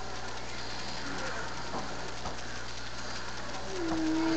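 Steady low electrical hum and hiss from a webcam microphone, with a couple of faint light taps in the middle. Just before the end a person starts humming a low, slightly falling note.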